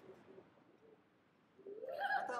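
Near silence with faint, brief low tones that cut out after about a second; a voice starts rising near the end.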